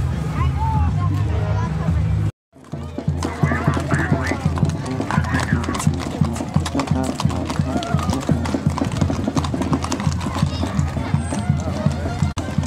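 Horses' hooves clip-clopping on asphalt as parade horses walk past: a quick, uneven run of sharp hoof strikes that begins about two and a half seconds in after a short break, with people talking. Before the break there is a steady low hum.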